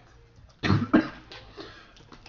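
A person coughing, two quick coughs about a third of a second apart about half a second in.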